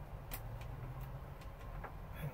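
A few faint, sharp metallic clicks as a small screw, lock washer and nut are handled and fitted by hand at an interior mirror bracket, over a low steady hum.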